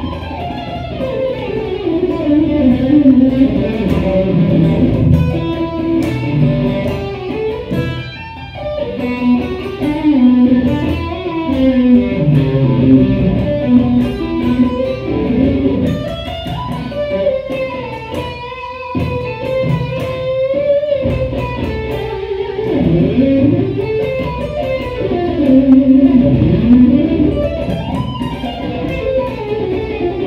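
Electric guitar played solo, a continuous lead line of single notes with slides and bends.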